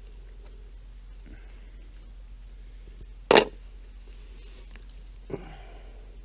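Faint sounds of a possum's hide being pulled off the carcass by hand over a low steady hum. One short, loud sound about three seconds in stands out above them.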